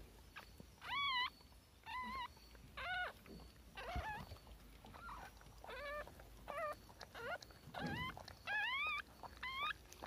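Newborn puppies squeaking: about a dozen short, high calls that each waver up and down in pitch, coming one or two a second.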